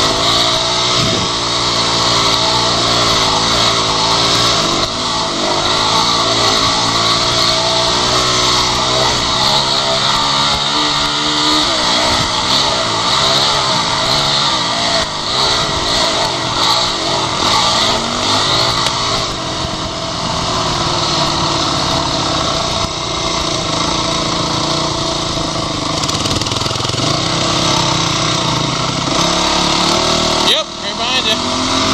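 Dirt bike engine under way, its revs rising and falling again and again with the throttle and settling steadier in the last third, under a steady rush of wind noise.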